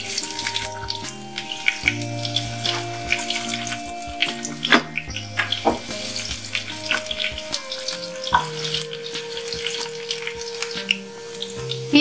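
Sliced onion sizzling and crackling as it fries in hot oil in a nonstick pan, stirred with a wooden spatula, over soft background music.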